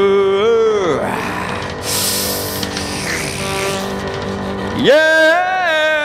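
Live male vocal over backing music. A held note slides down and ends about a second in, the accompaniment carries on, and the voice comes back near the end with a rising, held note.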